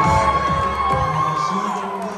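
Dance music with a steady bass line over a cheering crowd, with one high shout held for about a second and a half.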